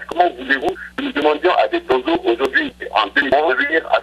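Speech only: a man talking in French over a telephone line, without pause, with a steady low hum and frequent sharp crackling clicks on the line.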